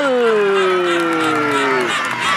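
A commentator's long drawn-out shout of "gol" for a scored penalty: one held voice sliding steadily down in pitch, breaking off just before the end.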